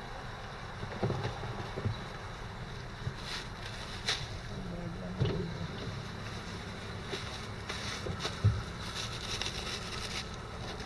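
A plastic bag rustling and plastic meal containers being handled, with a few soft knocks, over a steady low background rumble.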